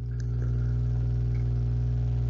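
A loud, steady low hum made of several even tones, switching on suddenly just before and holding unchanged, like electrical or ventilation hum in a lecture recording.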